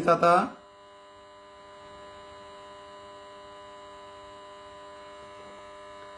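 A faint, steady electrical hum made of several even pitched tones, left alone after a man's voice stops about half a second in.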